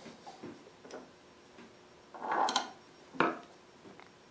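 Light handling sounds of the black front knob being fitted onto a Stanley hand plane's cast-iron body: a few soft clicks, then a short rubbing scrape about two seconds in and a sharper knock about a second later as a screwdriver comes into use.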